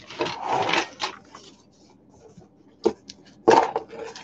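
Handling of a metal-chain costume necklace and a cardboard jewelry card: a rustling scrape through about the first second, a sharp click near three seconds in, and another short rustle just before the end.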